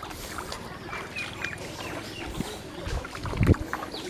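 Footsteps in wet mud and shallow water, with two heavy low thumps about three seconds in.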